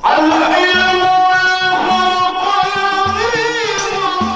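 A man's voice singing an Islamic devotional song through a microphone. He enters loudly right at the start with long, ornamented notes that slide up and down, over a steady hand-drum rhythm.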